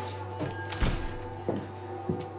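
Background score of steady sustained tones, with three footsteps knocking on a hard floor as a woman walks.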